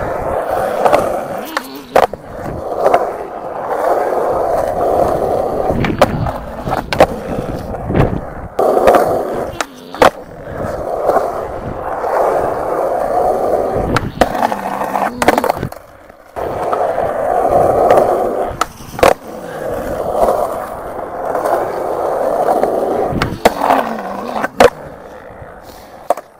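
Skateboard wheels rolling over concrete in several separate runs, broken by sharp clacks of the board popping off the tail and landing.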